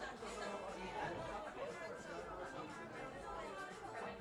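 Indistinct chatter of several people talking at once in a room, with no music playing.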